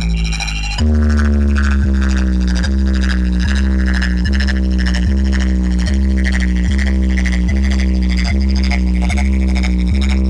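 Loud DJ competition music played through a huge stacked speaker system: a heavy bass drone under a falling synth sweep that repeats about every 0.8 seconds, starting up again after a short drop in level within the first second.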